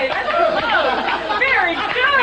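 Several people talking over one another in lively conversation.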